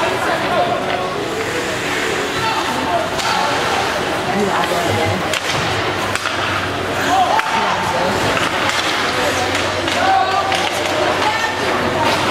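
Ice hockey rink during play: indistinct spectator voices and shouts, with scattered sharp knocks and slaps of sticks, puck and boards.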